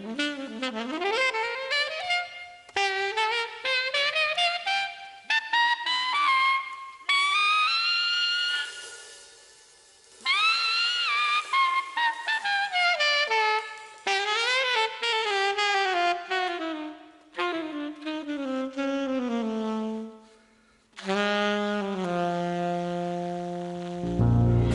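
Unaccompanied alto saxophone playing a jazz cadenza: fast runs and pitch bends broken by two short pauses, closing on long low notes that step down.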